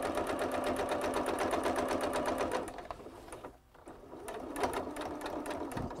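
Domestic electric sewing machine edge-stitching a hem in knit fabric, running with a fast, even stitch rhythm. It stops a little under three seconds in, and softer, uneven machine sounds follow.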